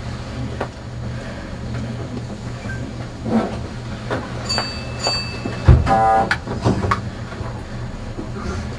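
Steady low hum of a stopped electric train's onboard equipment, heard from its cab, with scattered clicks and knocks. Two short high beeps come about four and a half and five seconds in, then a loud, brief pitched tone about six seconds in.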